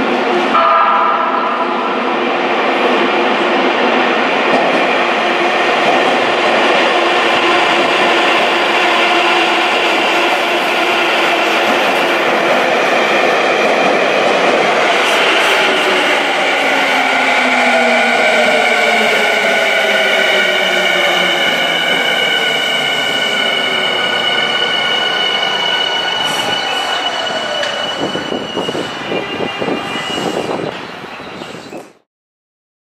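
Tokyu 5050 series electric train running into an underground station and braking to a stop, with a loud rumble of wheels on rail. Over the second half a whine falls steadily in pitch as the train slows, and a steady high squeal runs under it near the end.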